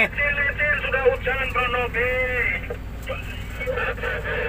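A man's voice talking for the first couple of seconds, then fainter, over the steady low hum of a dump truck engine heard from inside the cab.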